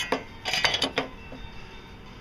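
A few sharp metallic clinks and rattles, clustered about half a second in, from metal tools or engine-bay parts being handled.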